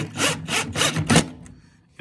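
Cordless drill/driver driving a stainless self-tapping screw into a fibreglass boat console, in about five short bursts over the first second or so, then quiet.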